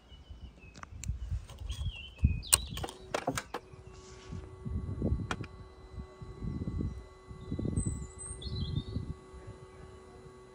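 Several sharp mechanical clicks about two and a half to three and a half seconds in, then a faint steady electrical hum as the BMW S1000RR's ignition comes on and its dashboard powers up, with the engine not running. Birds chirp in the background, and soft low rumbles come and go.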